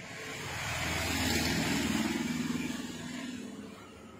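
A motor vehicle passing by: engine and road noise swell to a peak about one and a half seconds in, then fade away.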